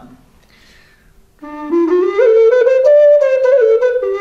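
A gemshorn, a horn-bodied vessel flute with a mellow tone, playing a short phrase of sustained notes that start about a second and a half in, climb stepwise and then fall back.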